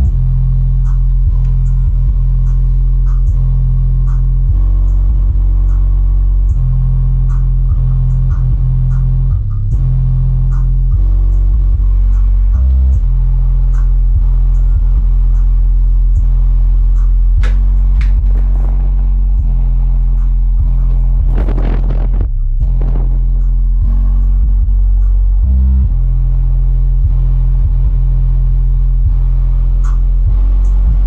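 Bass-heavy music played loud through a subwoofer box driven by an old Crunch V-200 car amplifier, with deep bass notes held in a steady pattern and light ticks of percussion on top. The bass drops out briefly a few times, and a swelling effect sweeps through the music about two thirds of the way in.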